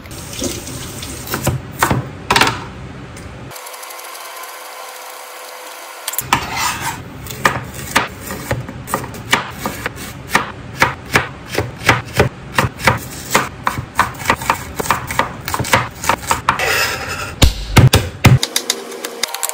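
Chef's knife chopping vegetables on a plastic chopping board: a long, quick run of sharp strikes, a few a second, as carrots are sliced and garlic minced. It is preceded by a few seconds of knocks and rustling and then a short stretch of steady hiss.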